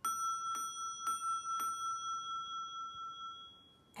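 A Montessori bell struck with a mallet four times, about half a second apart. It rings one clear high note that fades out near the end.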